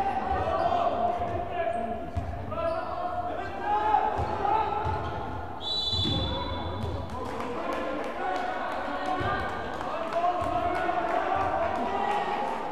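A basketball bouncing on a wooden gym floor during play, with spectators' voices carrying through the echoing hall. A referee's whistle blows once, about six seconds in, for about a second.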